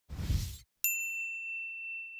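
Channel intro sting: a brief rush of noise with a low thud, then a single bright ding struck just under a second in that rings on as one steady high tone.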